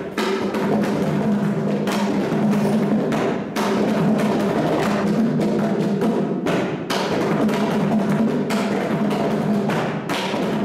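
Two mridangams, double-headed barrel drums, played by hand together in a fast, continuous run of sharp strokes over a ringing low drum tone, with a couple of brief breaks in the pattern.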